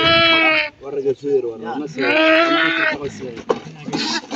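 Goat bleating as it is held down: two long calls, one at the very start and one about two seconds later, each lasting under a second.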